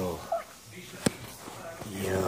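A man's low voice trailing off at the start, then a brief high squeak and one sharp click about a second in.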